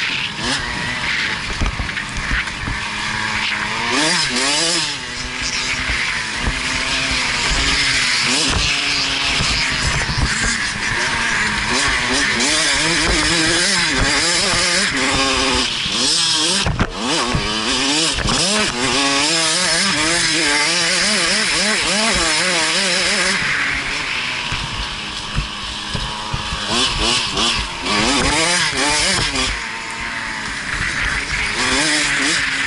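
KTM 65SX's 65cc single-cylinder two-stroke engine revving up and down over and over as the bike is ridden hard round a dirt track, pitch climbing and dropping with each gear and throttle change. A single sharp knock about halfway through.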